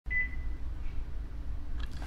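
A short, high electronic beep right at the start, over a steady low hum.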